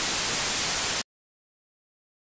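Television-static sound effect: a steady hiss of white noise that cuts off suddenly about a second in.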